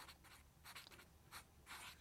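Faint strokes of a black marker on drawing paper, a handful of short separate strokes as a small cartoon figure is sketched.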